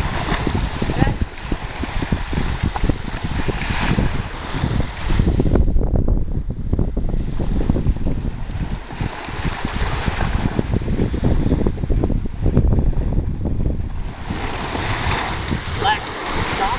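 Wind buffeting the microphone over the wash of small waves breaking on the shore, gusting louder about six seconds in and again around twelve seconds.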